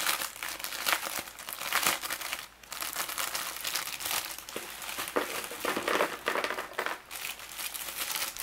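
Clear plastic bag crinkling and rustling as its adhesive fold-over flap is pulled open and the bag is handled and emptied, with small plastic parts dropping out of it.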